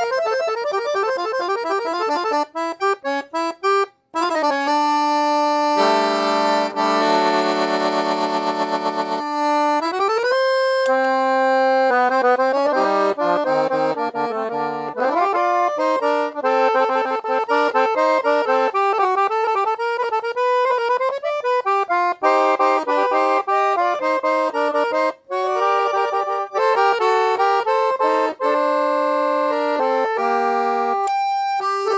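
Pancordion Baton piano accordion played on its treble keyboard: quick runs of notes, then short choppy chords that stop briefly about four seconds in, a long held chord, and a flowing melody of held and moving notes.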